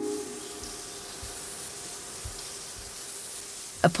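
A steady hiss like a fine water spray, with a few faint low thumps.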